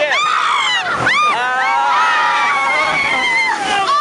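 Riders on a river rapids raft ride crying out, with one long high scream held for about two seconds, over the rush of water.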